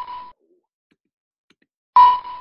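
Short pitched ding sound effect marking each newly generated ID. One ding fades out just after the start, and a second, identical ding sounds at the very end.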